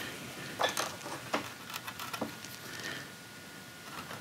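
A small hand chisel cutting into the wood of a rifle stock at the trigger-guard inlet: a few faint, sharp clicks and light scrapes, spaced irregularly through the first half.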